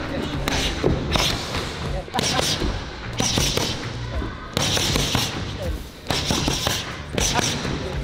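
Gloved punches hitting focus pads: a string of sharp smacks at irregular intervals.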